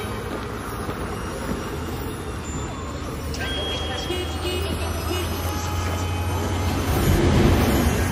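Soundtrack bed of low, rumbling, traffic-like noise over a steady low drone, slowly swelling and loudest near the end, with a few brief high tones about three and a half seconds in.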